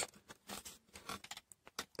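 Faint handling noise: a few small plastic scrapes and ticks as the jump-start clamp lead's plug is worked against the port on the jump starter's plastic casing.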